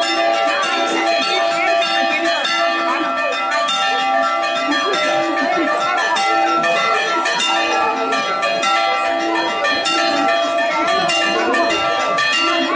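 Several church bells of different pitch rung by hand in a continuous peal, strokes overlapping so the ringing never dies away.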